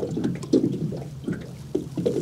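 Water lapping and sloshing in a few short, irregular splashes.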